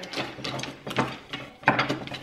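Small metal easel hardware and parts handled on a table: a handful of sharp, separate clicks and knocks.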